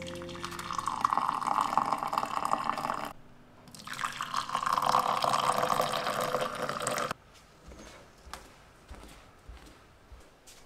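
Hot milk poured from a stainless steel saucepan into ceramic mugs in two pours, each about three seconds long with a short break between them. After the second pour the sound stops abruptly, leaving only faint light taps.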